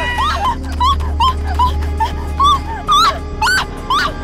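An animal crying out in a rapid run of short, arching squeals, several a second, over a low steady drone of film music.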